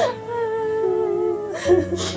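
Slow, sad background music with long held notes. A short breathy sound comes near the end.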